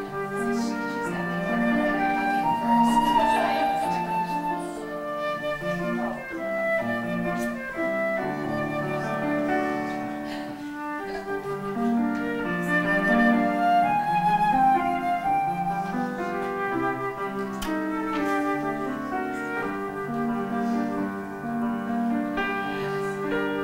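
Live flute and grand piano playing together, the flute holding melody notes over piano chords.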